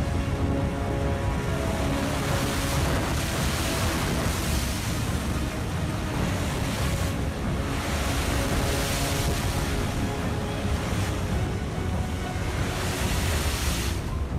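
Storm wind and heavy surf in a typhoon, a loud steady rush that swells in gusts several times, with background music faintly beneath.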